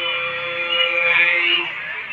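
Voices singing sli, the Lạng Sơn folk song style, in long, slowly drawn-out held notes that break off about three-quarters of the way through.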